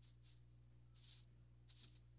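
A rattle or shaker shaken in short hissy bursts, about six of them, unevenly spaced.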